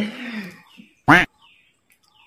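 A man's voice trailing off, then a single short, loud yelp whose pitch rises and falls, about a second in.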